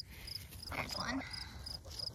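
A cricket chirping steadily, a short high chirp about three times a second.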